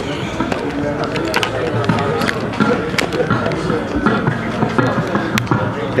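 Indistinct crowd chatter from a bar audience between songs, with scattered sharp clicks and knocks from the stage.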